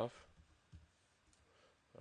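A few faint, widely spaced clicks of computer input while code is being edited.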